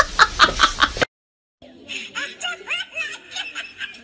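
Laughter in short, rapid bursts for about a second, cut off abruptly. After a half-second of silence comes a fainter voice with short, rising laugh-like sounds.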